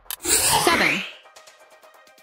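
Quiz time's-up sound effect at the end of the countdown: a loud noisy burst about a second long with a downward pitch sweep, followed by faint background music.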